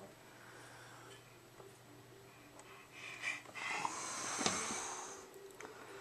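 A baby's breathing and snuffling close to the microphone: faint at first, then a breathy rush that swells about three seconds in and fades out a little after five, with a small click in the middle of it.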